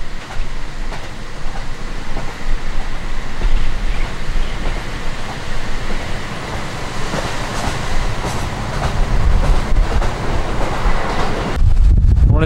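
Cabin noise of a KiHa 40 diesel railcar running with its windows open: a steady rumble of engine, wheels and rushing air, with a few clicks of the wheels over rail joints. The rumble becomes louder and deeper shortly before the end.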